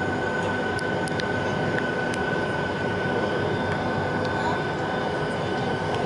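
Boeing 757-200 jet engines running, heard inside the cabin over the wing: a steady rumble with a high, steady whine and a few faint ticks.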